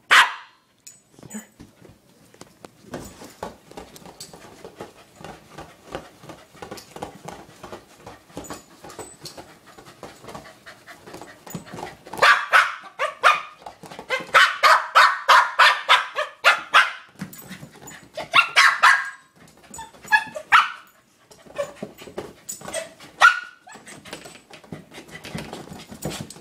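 A corgi barking in rapid runs while it attacks a large rubber ball. The barking is quieter and sparse at first, then loudest and fastest in the middle.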